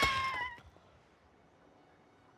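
A wounded baby dragon gives a single high, meow-like cry that ends about half a second in, dipping slightly in pitch as it stops.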